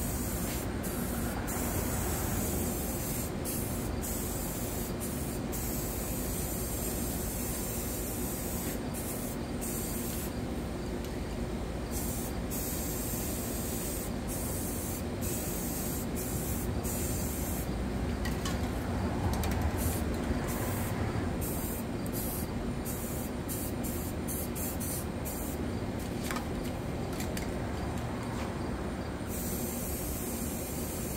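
Aerosol spray paint cans hissing steadily as paint is sprayed onto the surface of water in a tub, laying down a floating paint film for hydro-dipping.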